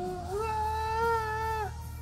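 A single voice holds one high, steady note for about a second and a half, sliding up into it at the start.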